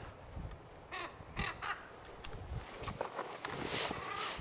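Two hoarse calls from a large black corvid flying overhead, about a second in and again half a second later, followed near the end by a short hiss.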